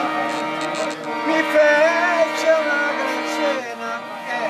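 Piano accordion playing a traditional folk tune in sustained chords, with a man's voice holding a long, wavering sung note over it in the middle. The held chord breaks off shortly before the end.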